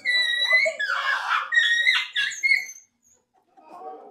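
A woman's high-pitched squealing and laughter: a long shrill cry, a breathy burst, then shorter squeals that stop a little under three seconds in.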